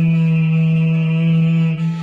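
Khaen, the Lao bamboo free-reed mouth organ, sounding a steady held chord that drops away slightly near the end.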